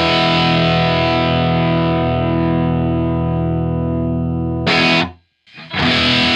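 Gibson Les Paul played through a Vox AC15C1 amp and a Sick As overdrive pedal: a distorted chord held and left to ring, its top slowly fading. Near the end a short new chord is cut off into a brief silence, and playing starts again.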